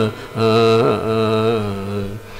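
A man's voice chanting in long, steady held notes, with a short break at the start and one dip in pitch midway. It is the opening of a Sanskrit closing benediction (mangala shloka) chanted at the end of a gamaka recital.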